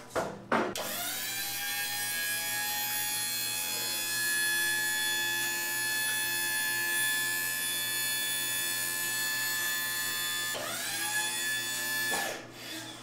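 Battery-powered hydraulic pump motor of a home-built pit lift running to raise the lift, with a steady whine. It spins up about a second in and winds down near the end as the lift reaches the top. A brief knock comes just before it starts.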